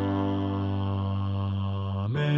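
Four-part hymn sung on voices with the bass part brought forward, holding one long sustained chord after a short rest.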